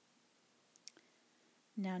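Quiet room tone broken by two or three faint, short clicks a little under a second in, from paper and card items being handled as the map folder is picked up. A woman starts speaking near the end.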